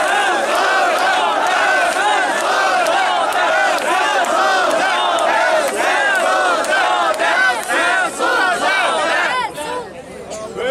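Large crowd of marchers shouting together, many voices at once, loud and steady, dying down near the end.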